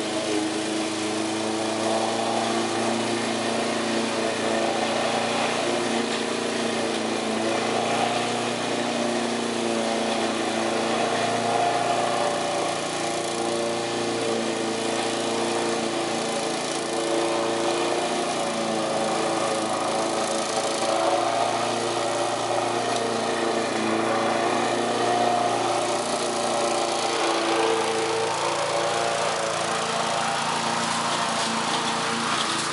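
Walk-behind rotary lawn mower with a Briggs & Stratton engine, running steadily while mowing, its pitch wavering slightly.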